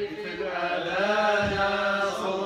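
Men chanting Arabic mawlid verses: a rising and falling melodic line over a steady held low note.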